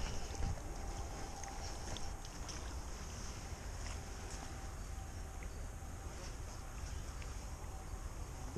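Steady low wind rumble on the microphone, with a few faint clicks and rustles from handling at the grassy water's edge.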